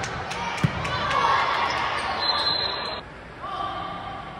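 A volleyball hit once with a sharp smack, just over half a second in, among players' and spectators' voices in a large gym.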